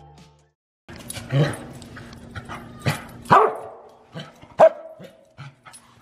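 A corgi barking several times in short, sharp barks spaced a second or so apart, squaring off with a cat.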